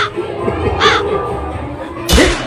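Two short, high-pitched cries about a second apart over a steady background din.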